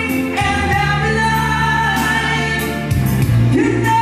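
Male voice singing a rock ballad into a microphone over backing music, holding long notes that bend in pitch.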